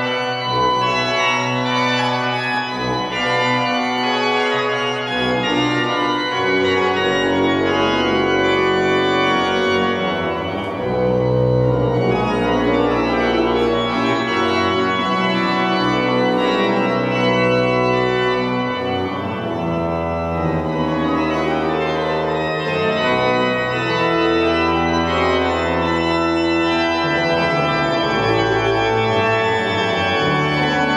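Church pipe organ playing sustained chords in a large, reverberant church, the chords shifting every few seconds, with deep pedal bass notes joining about seven seconds in.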